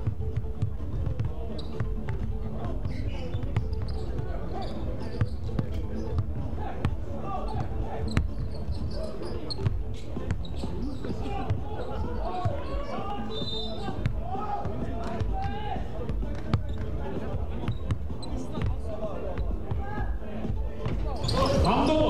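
Basketballs bouncing on a hardwood gym floor, giving irregular sharp thuds, with players' voices in the background that grow louder near the end.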